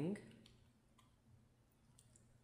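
A few faint computer keyboard key clicks as the last letters of a word are typed and Return is pressed.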